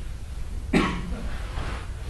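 A single short cough about three-quarters of a second in, over a low steady room hum.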